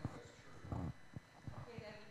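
Handheld microphone being handled: a few dull knocks and rubs, the loudest about three-quarters of a second in. Faint speech is heard toward the end.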